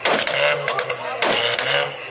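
A car engine idling with a low hum, sharply revved twice, with exhaust pops and crackles on each rev, while a crowd shouts.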